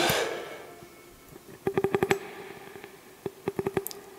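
Ibanez electric guitar: a note dying away at the start, then a quick run of about six picked notes on one pitch about halfway through. A few fainter string clicks follow near the end.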